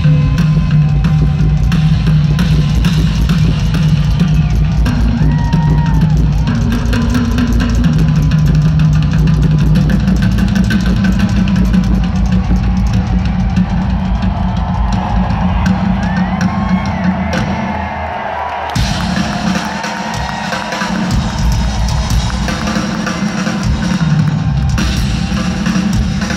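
Live rock drum kit solo, played fast and dense with heavy kick and tom strokes, heard from far back in an arena. Beneath it runs a steady low tone that shifts pitch a few times and cuts out about three-quarters of the way through.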